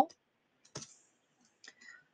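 A few faint clicks, one sharper click about a second in and a couple of softer ones near the end: a stylus tapping on a pen tablet while a short note is handwritten.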